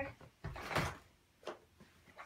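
Dirt Devil Easy Elite canister vacuum's cord rewind: a brief rush lasting about half a second as the power cord reels quickly back into the body.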